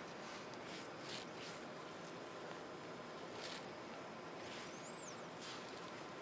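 Faint rustling and a few soft clicks from gloved hands handling sterile drapes and a groin sheath, over a steady low room hiss, with a faint high chirp about five seconds in.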